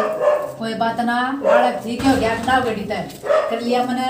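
A woman's high, drawn-out voice in several stretched phrases with short pauses, without clear words.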